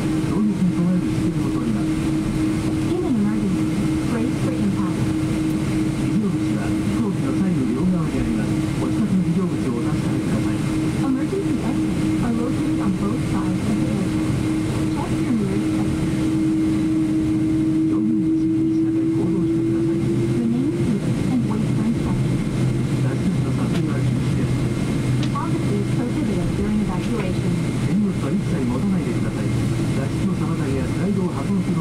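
Cabin noise of a Boeing 777-200 taxiing: a steady engine hum with a tone that rises slightly in pitch and fades out about two-thirds of the way through, under indistinct voices.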